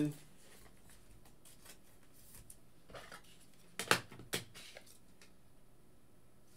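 Quiet room tone with small handling noises of a trading card in a hard plastic holder on a tabletop: a faint tap, then two sharp plastic clicks about four seconds in, half a second apart.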